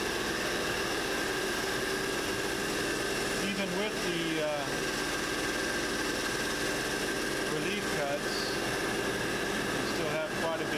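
Vacuum hold-down pumps of a CNC router table running, a constant machine drone with a steady hum.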